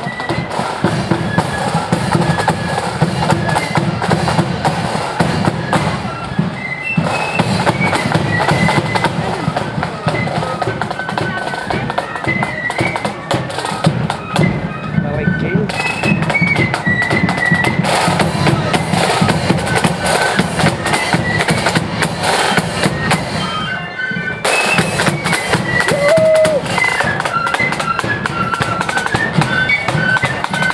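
A marching flute band playing a tune: high flutes carry the melody over a steady beat of snare drums and bass drum.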